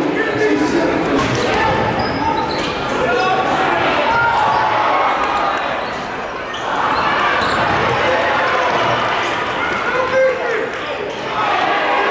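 Basketball game sound in a gym: voices of the crowd and players mixing in the hall, with a basketball bouncing on the hardwood floor and one sharper, louder hit about ten seconds in.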